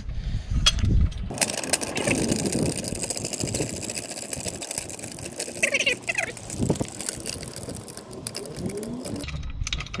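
Small steel trolley floor jack being pumped up by hand with no load on it: a dense metallic rattling and clicking from the handle and lifting arm, starting about a second in and stopping near the end.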